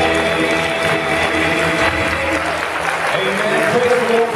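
Congregation applauding as the last held chord of a men's gospel vocal group with acoustic guitars dies away in the first second or so.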